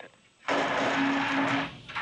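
Launch-control radio transmission on the countdown net: about a second of hiss with a steady low hum, starting half a second in, as the crew access arm retraction is called out.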